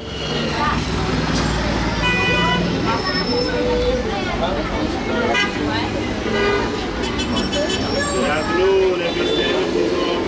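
Street traffic with car horns tooting over a low rumble, and people's voices. The sound cuts in suddenly at the start.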